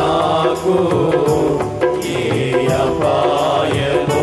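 Christian worship song performed live: a voice sings a wavering melody over regular drum hits.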